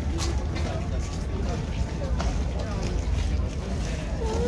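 Voices of people talking in the background, over a steady low rumble.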